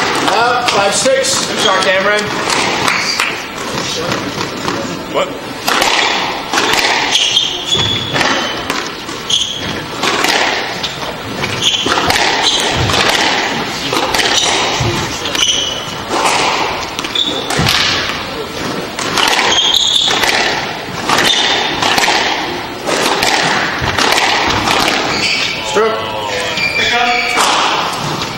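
Squash ball being struck by racquets and hitting the court walls in a string of sharp hits during a rally. Short high squeaks of shoes on the wooden floor are heard among the hits.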